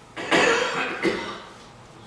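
A man coughing twice, about three-quarters of a second apart, the first cough the louder.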